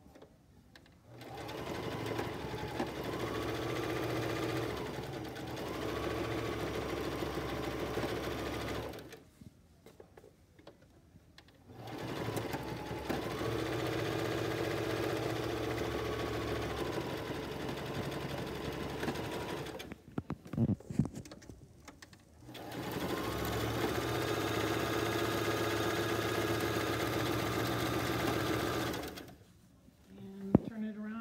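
Singer Scholastic Plus electric sewing machine stitching a zigzag seam through cotton fabric and PUL. It runs at a steady speed in three stretches of about seven to eight seconds each, stopping briefly between them. A few sharp knocks sound in the second pause.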